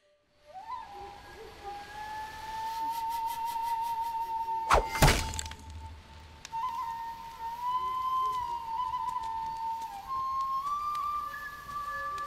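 A thrown knife strikes into a tree trunk with a single sharp thunk about five seconds in. Background music holds one long, high note throughout.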